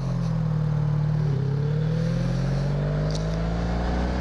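1983 Honda V65 Magna's 1100 cc V4 engine under way on the road, with a brief break in its note about a second in and then a steadily rising pitch as the bike accelerates.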